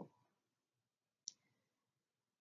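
Near silence with a single short click about a second and a quarter in.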